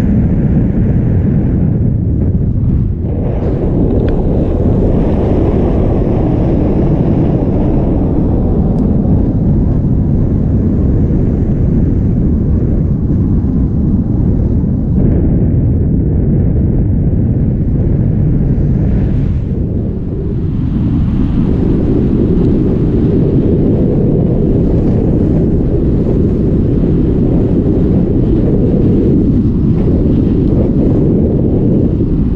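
Wind from the flight of a tandem paraglider buffeting an action camera's microphone: a loud, steady, low rumble, easing off slightly twice.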